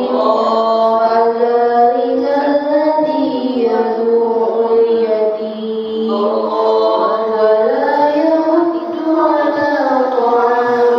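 A young woman reciting the Qur'an melodically (tilawah) into a handheld microphone, drawing out long, slowly wavering notes with short breaks between phrases.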